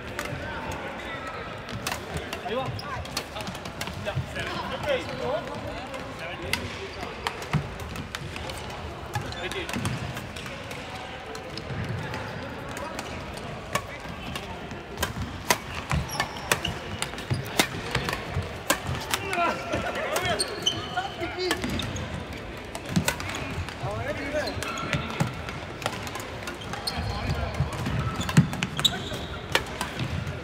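Badminton play in a large, echoing sports hall: irregular sharp racket-on-shuttlecock hits over a steady murmur of voices from the surrounding courts.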